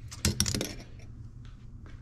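Small metal tools and parts on a workbench clinking and clattering as they are handled, in a quick burst of sharp metallic clicks about a quarter second in, followed by a couple of faint ticks near the end.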